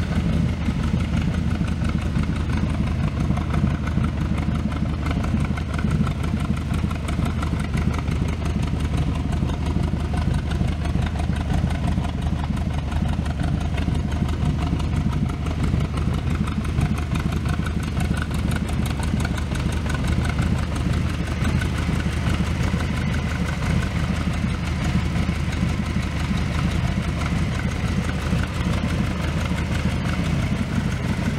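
The V8 engine of a custom 1930 Ford Model A hot rod idling steadily.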